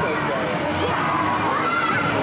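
Many children's voices shouting and cheering over one another, a crowd of excited riders and onlookers, with a faint steady low hum beneath.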